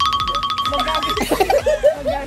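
Comic sound effect added in the edit: a fast, even run of repeated high tones lasting about a second, followed by a string of quick bending, swooping tones.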